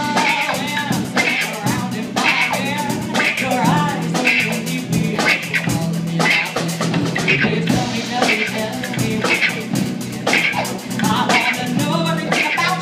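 A live rock band playing: electric guitar, bass guitar and drum kit with a steady beat, and women's voices singing over them.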